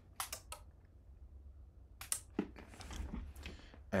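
Clicks of the power switch being flipped on an RC2014 Z80 homebrew computer as its power is cut: three quick clicks at the start, then another click and a soft thump about two seconds in, followed by a faint hiss.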